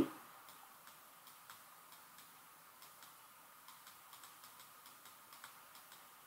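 Faint, light ticks of a stylus tapping and sliding on a screen as a word is handwritten, with most of the ticks in the second half.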